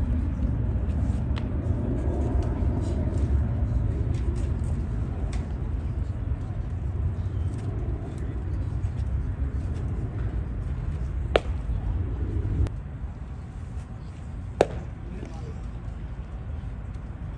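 Baseball practice: two sharp cracks of a baseball being caught or hit, about 11 seconds in and again about three seconds later, over a low steady rumble.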